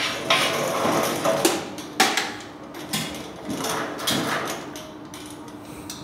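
Metal clanking and rattling as an electric chain hoist is handled and hooked onto a gantry's beam trolley: a string of sharp knocks, the loudest about two seconds in.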